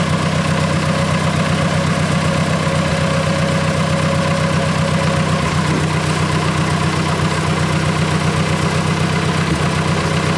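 1962 Ford 801 Powermaster tractor's four-cylinder gasoline engine idling steadily with an even firing beat. It runs with the choke pulled out part way, which its faulty carburetor needs to keep it from spitting, sputtering and dying.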